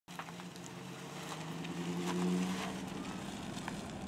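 Chevrolet Silverado pickup's engine running as the truck pulls away from the curb, a steady note that rises a little in pitch and grows louder about two seconds in, then eases off.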